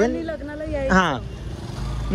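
A woman talking, over a steady low rumble of vehicle noise.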